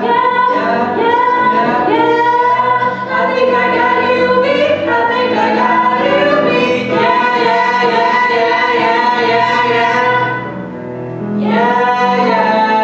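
Teenage voices singing a Broadway show-tune duet into handheld microphones, with long held notes. The sound drops briefly near the end before the next held note comes in.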